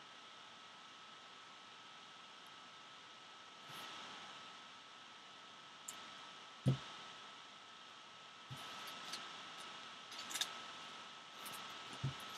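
Faint rustling and small ticks of trading cards being sorted by hand, with one soft thump about two-thirds through, over a steady low hiss and a thin high hum.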